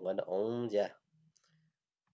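A man's voice speaking for about a second, then stopping; the rest is near silence.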